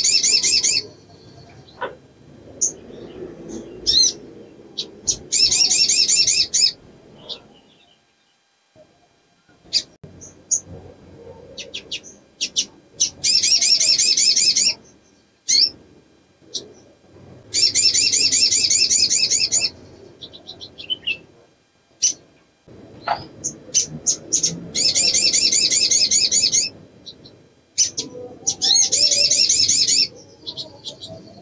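Female olive-backed sunbird calling in breeding condition: about six fast, high trills of roughly two seconds each, every few seconds, with short single chips between them.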